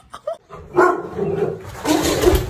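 A dog barking, starting about half a second in.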